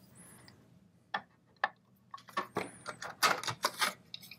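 The screw is taken out and the handguard is worked off a Daewoo K1A1 carbine by hand. There are two sharp clicks a little over a second apart, then a quicker run of clicks and knocks near the end as the handguard halves come free.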